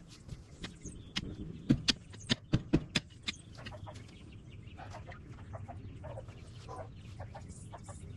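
A quick run of about seven sharp knocks between one and three and a half seconds in: a digging tool striking rocks in stony soil while a post hole is dug. Chickens cluck softly, with fainter scraping and clicks after the knocks.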